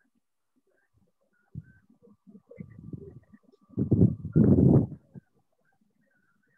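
Indistinct, muffled noises coming over a video call's audio, with two louder short bursts about four seconds in.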